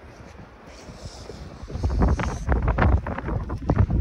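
Wind buffeting a phone's microphone, a low uneven rumble that swells into loud gusts about halfway through.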